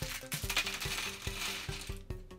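Small plastic building-brick pieces clicking and rattling as a built toy dinosaur and loose bricks are handled, over background music with a steady beat.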